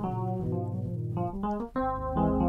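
Sampled '01/W Dyno' electric piano sound playing gospel chords, moving through several chord changes with a short gap before the last chord.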